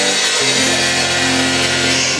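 Live band playing an instrumental passage: electric guitars and bass holding a chord over drums and cymbals. About half a second in, a low bass note comes in and holds.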